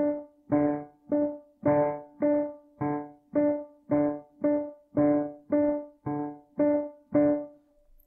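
Yamaha digital piano playing one note, D, over and over at a slow, steady pace of a little under two notes a second. The two hands strike D an octave apart, and the lower D sounds on only some of the strokes. This is the basic ragtime rhythm pattern being drilled slowly. The last note dies away just before the end.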